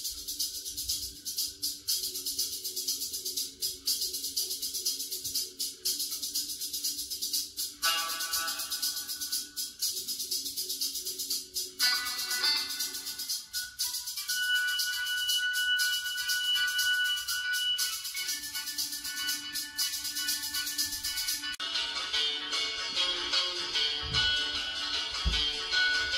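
Music with a steady beat playing from the small speaker in a homemade music-sync light controller box, fed by a car radio streaming from Alexa.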